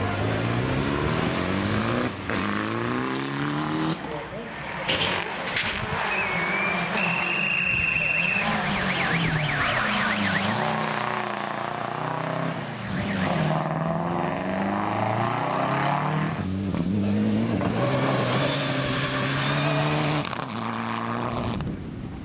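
Rally cars accelerating hard on a wet tarmac stage. Their engines rev up through the gears in repeated rising runs, with a drop in pitch at each shift. A brief high squeal comes about seven seconds in.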